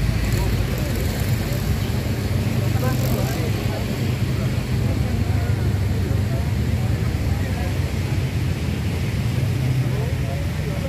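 Many motor scooter and motorcycle engines running at low speed together, making a steady low hum, with people's voices mixed in.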